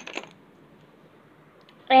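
A few light clicks of plastic letter tiles as a hand picks through the pile, then a faint single tap. Near the end a woman's voice says "L".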